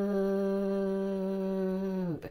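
A man humming one long, steady note at a single pitch, trailing off at the very end.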